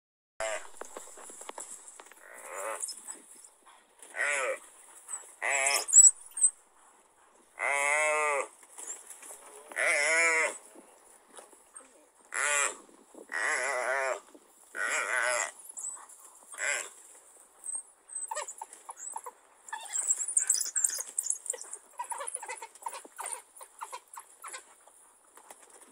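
Gemsbok (oryx) bleating in distress as African wild dogs feed on it alive: about ten wavering, bleat-like calls, each under a second long and a second or two apart. In the last few seconds they give way to a busier run of short, quieter noises.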